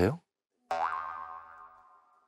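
A comic boing sound effect: a springy twang that bends quickly upward, then rings on as a tone that fades away over about a second.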